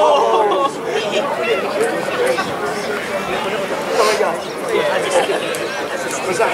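Indistinct chatter of several spectators' voices talking among themselves.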